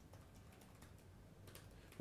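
Faint typing on a computer keyboard: a quick run of soft key clicks.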